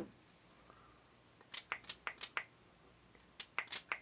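Faint, quick scratchy strokes from hands working a cotton swab and a small spray bottle of cleaner, in two short bursts of four or five strokes each, one in the middle and one near the end.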